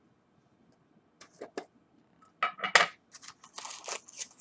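A metal pipe-tobacco tin being handled: a few light metallic clicks, then a louder cluster of clicks and scrapes about halfway through, and a few short soft noises near the end.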